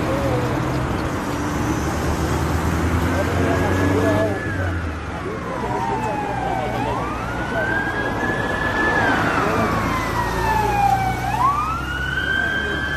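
An emergency-vehicle siren wailing, each cycle rising quickly and falling slowly, over a background of bystanders' voices and low traffic hum.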